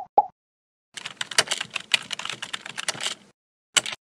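Two short beeps, then about two seconds of rapid computer-keyboard typing clicks as a sound effect, ending with one sharp click near the end.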